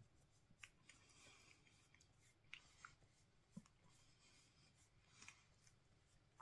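Near silence with faint, scattered small clicks and rubbing sounds of hands handling a small object.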